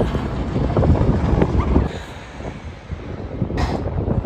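Outdoor wind buffeting the microphone as an uneven low rumble, easing off briefly about halfway through, with a short sharper gust or knock just before the end.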